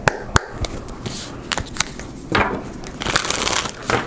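A deck of tarot cards being shuffled by hand: irregular sharp clicks and short rustles of card stock sliding against card stock.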